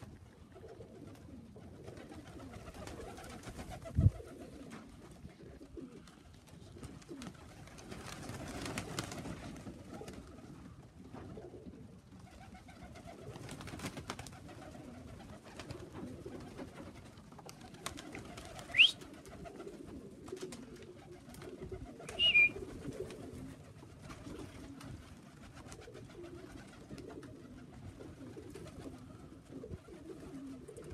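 Tippler pigeons cooing, a continuous murmur with scattered clicks. A sharp thud comes about four seconds in, and a brief high rising squeak and a short high chirp come about two-thirds of the way through.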